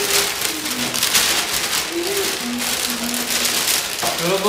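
Plastic bags crinkling and rustling close to the microphone as they are handled and scrunched, a dense crackle throughout.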